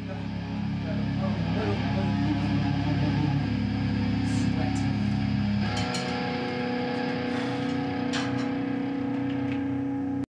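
Electric guitars and bass through amplifiers, letting a held chord ring out steadily with no drums. About six seconds in the low bass notes drop away and a steady amplifier tone is left, with a few light clicks.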